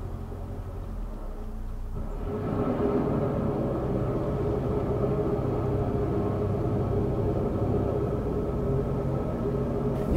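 Narrowboat's diesel engine running under load while the boat reverses, a steady rumble. About two seconds in it is throttled up and grows louder, then holds steady.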